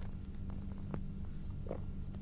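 A steady low hum with a few faint, short clicks.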